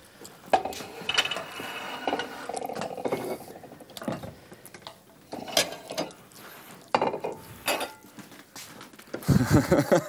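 Plates and cutlery clattering in a kitchen: china set down on a counter with scattered separate knocks and clinks of crockery and metal.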